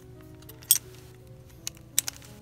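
Hard clear plastic crystal-puzzle pieces clicking against each other as a piece is pressed into place: one sharp, loud click about a third of the way in and two lighter clicks near the end. Soft background music with held notes runs underneath.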